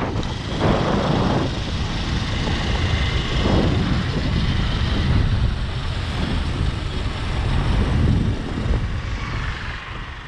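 Riding noise on a moving motorcycle: wind rushing over the camera microphone, with the engine and road noise underneath, steady and dropping a little near the end.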